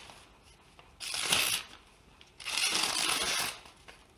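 Freshly sharpened serrated knife slicing through hand-held magazine paper as a sharpness test: two papery swishing cuts, a short one about a second in and a longer one from about two and a half seconds.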